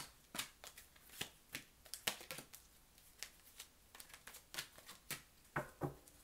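A tarot deck being shuffled and handled by hand: a quiet run of short, irregular card snaps and slaps.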